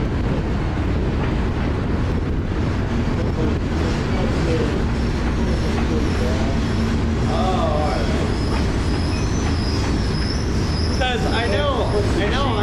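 Cars of a Norfolk Southern mixed freight train (gondolas, a tank car, boxcars) rolling past, with the steady, continuous noise of wheels running on the rails.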